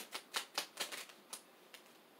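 A tarot deck being shuffled by hand: a quick run of light card clicks and slaps that slows and stops about a second and a half in.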